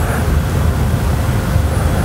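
A loud, steady low rumble with a hiss over it.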